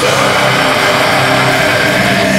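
Harsh extreme-metal vocal, a guttural scream/growl held over a heavy metal backing track with distorted guitars.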